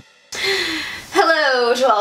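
A woman with a cold draws an audible breath about a third of a second in, then starts talking about a second in.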